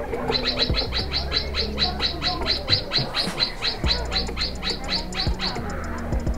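Swift parrot calling a fast run of short, sharp, high notes, about five a second, repeated evenly for about five seconds before stopping near the end.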